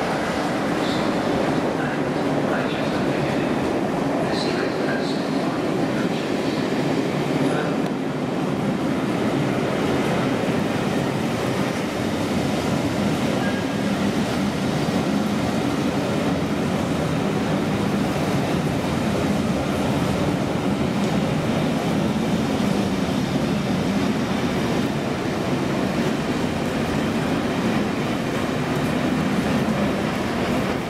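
Passenger train coaches rolling past at low speed: a steady rumble of wheels and running gear on the track, with a few light clicks in the first several seconds.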